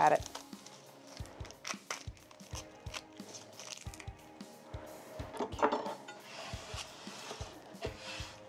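Soft background music under small crackles and rustles of dry onion skin being peeled off by hand, with light ticks on a wooden cutting board. A brief vocal sound from the cook comes a little past halfway.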